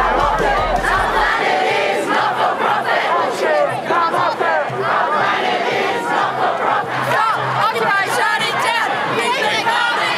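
A large crowd of protesters shouting and chanting, many voices overlapping in a steady, loud din.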